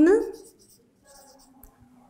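Felt-tip marker writing a word on a paper chart: a few faint scratching strokes about a second in.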